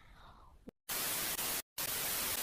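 Television static hiss, the no-signal sound of a lost broadcast: an even white noise that cuts in about a second in, drops out for a moment, and comes straight back.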